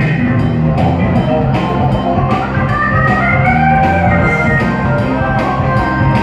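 Live band playing an instrumental passage: electric guitar, bass, keyboard and drum kit with a steady beat, and a lead melody line that rises and then falls across the middle few seconds.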